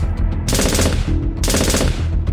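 Sound-effect gunfire: two bursts of rapid shots, the first about half a second in and the second about a second and a half in, over a low background music bed.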